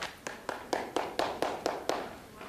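Hands clapping in a steady run of about four claps a second, as the meeting closes.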